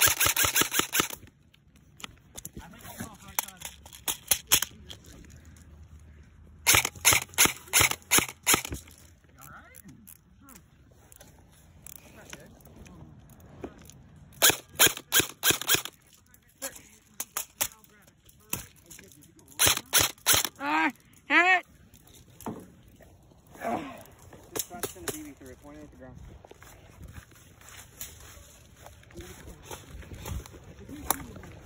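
Airsoft rifle firing four bursts of rapid shots. Each burst lasts about one and a half to two seconds: one at the start, one about seven seconds in, one about fifteen seconds in and one about twenty seconds in. A short shout comes right after the last burst.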